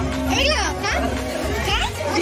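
Children's excited voices, calling and chattering over one another, with background music playing underneath.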